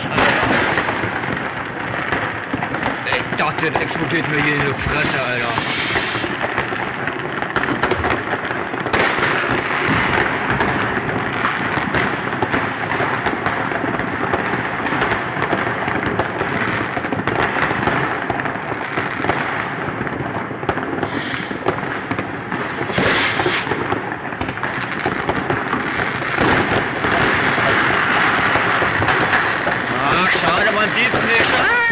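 A dense, unbroken barrage of fireworks and firecrackers going off from many places at once, crackling and banging without pause. A few louder bangs come about five, six and twenty-three seconds in.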